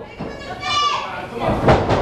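A high-pitched, wavering yell, then a loud thud about a second and a half in, as a body hits the wrestling ring.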